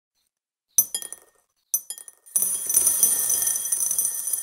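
Beans falling into a bowl: two short scatters of clinks about a second and about a second and three-quarters in, then a dense, continuous pour of clinking with a high ringing from the bowl from about two and a half seconds.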